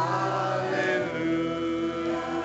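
Live church band music: a woman's voice singing sustained notes over piano and electric guitar.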